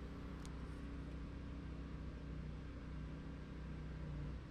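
A steady low mechanical hum with a faint sharp click about half a second in.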